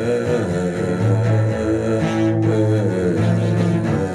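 A man singing long, bending notes over a strummed acoustic guitar.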